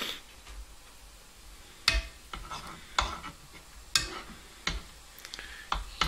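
Metal spoon knocking and scraping against a pan about five times while stirring melting gummy bears in boiling water, over a faint bubbling hiss.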